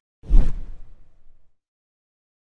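A single whoosh transition sound effect with a deep low end. It starts suddenly about a quarter second in and fades out over about a second.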